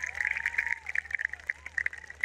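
Audience applauding: a spread of hand claps, densest in the first second and thinning out toward the end.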